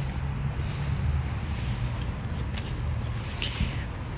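Steady low rumble of outdoor background noise, with a faint brief rustle about three and a half seconds in.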